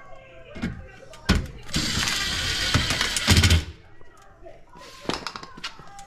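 Makita cordless impact driver running in one loud burst of about two seconds, hammering on a screw at the unit's cabinet. Voices can be heard faintly in the background.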